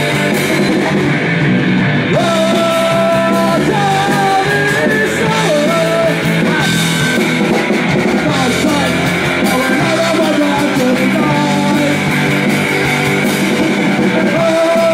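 Live oi! punk band playing loudly: electric guitar, bass and drums with a male voice singing held notes over them.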